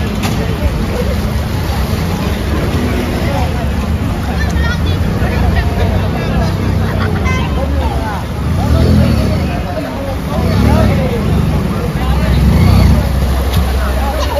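Several people talking over the running engines of motor scooters moving through floodwater; the engine noise swells three times in the second half.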